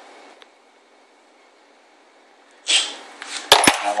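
Kydex cheek rest being pulled off a rubber-overmolded synthetic rifle stock: a short scrape near the end, then two sharp clicks.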